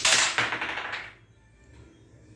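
Carrom striker flicked across a wooden carrom board, cracking into the carrom men and clattering for about a second before dying away.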